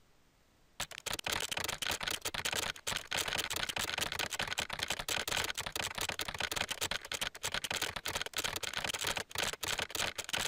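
A very fast, dense stream of keyboard keystroke clicks, starting about a second in. This is the auto-typing program's simulated keyboard sound as it types code at its fastest setting.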